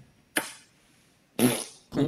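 A man blows a raspberry, a short buzzing lip noise about one and a half seconds in, after a brief puff of breath near the start.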